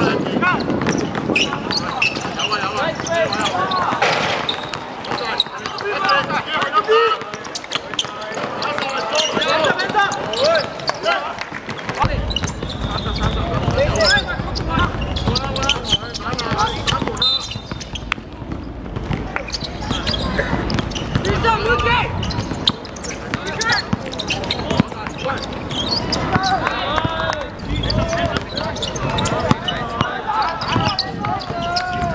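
Basketball dribbled and bouncing on an outdoor hard court, with many short sharp bounces, under players and spectators calling out and talking. A low rumble joins about twelve seconds in.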